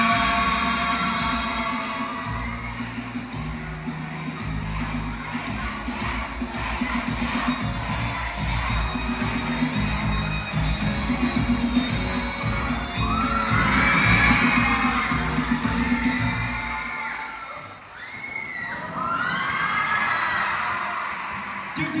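The song's accompaniment track plays on with a steady beat as the group's last sung notes fade. A crowd of young people then cheers and shouts over it. The music stops about seventeen seconds in, and the cheering carries on.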